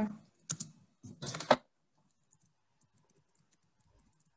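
Faint, light clicks of a computer keyboard being typed on, heard over a video-call microphone, after two louder short noises in the first second and a half.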